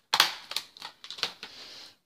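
Paper crafting materials handled on a cutting mat: a sharp click, then a few lighter taps and clicks, ending in a short sliding rustle of card stock.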